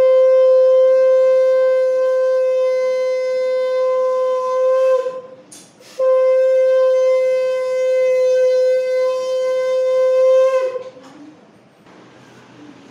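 Conch shell (shankha) blown in two long, steady blasts on one pitch, the first ending about five seconds in and the second starting a second later and stopping near the end, with a quick breath in between.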